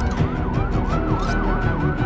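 A siren yelping, its pitch sweeping up and down about three times a second, over music.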